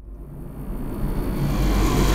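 Horror-trailer sound-design riser: a deep rumble under a rushing noise that swells steadily louder.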